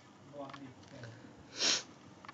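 One short, sharp rush of breath through the nose into a tissue about one and a half seconds in, after a few faint voice sounds.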